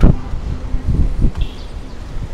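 Street ambience dominated by a low rumble of wind on the microphone and road traffic, with a faint short high sound about one and a half seconds in.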